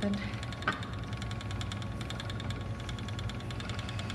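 Wooden Ashford Elizabeth 2 spinning wheel running under steady treadling, its flyer and bobbin turning with a low rumble and fine regular ticking. The spinner takes the wheel's noise for a sign that it needs oiling and is a bit out of balance.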